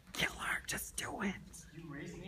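Hushed, whispered speech.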